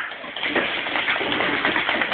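Four-man bobsleigh pushed off at the start: a steady hiss and scrape of the sled's steel runners on the ice as the crew push and load in.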